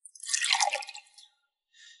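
Liquid poured from a ceramic ewer into a small cup: one splashing pour lasting about a second. A short faint hiss follows near the end.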